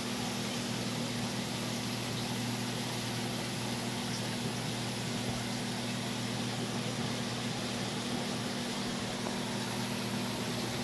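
Steady low hum with an even hiss, from aquarium pumps and circulating water, holding constant throughout.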